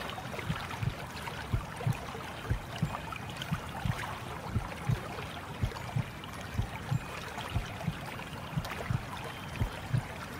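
Baby sleep sound: a steady rushing, watery noise with soft low thumps about twice a second.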